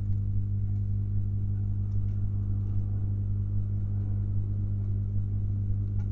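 Steady electrical mains hum, a low drone with a buzz of evenly spaced overtones, with a few faint ticks.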